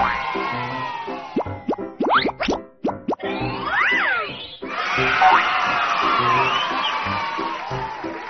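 A logo jingle: music with a steady beat, and cheering over it at the start and again from about halfway. A run of quick rising, whistle-like cartoon sound effects comes about two seconds in.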